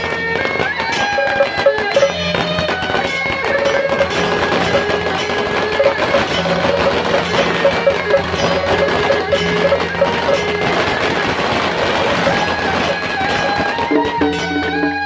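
A Beiguan band of suona shawms playing a loud melody together in unison, over percussion, with many sharp cracks scattered through.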